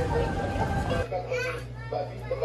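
Indistinct voices of people talking in a small shop, with a short high-pitched voice heard about a second and a half in, over a steady background din.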